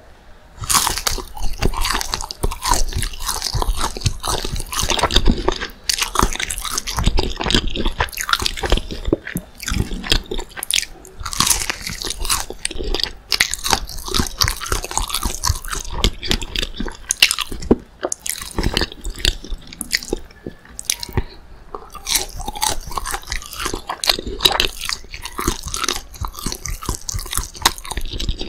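Close-miked bite into a crisp, breaded McDonald's spicy chicken nugget just under a second in, followed by loud, crunchy chewing, dense crackling that goes on without a break.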